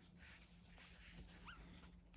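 Near silence: faint room tone, with two faint, short rising squeaks about a second and a half in.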